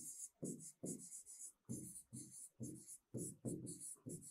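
Faint scratchy strokes of handwriting on a writing board, about three strokes a second, as words are written out.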